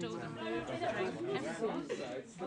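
Indistinct chatter: several pupils talking over one another in a classroom, with no single voice standing out.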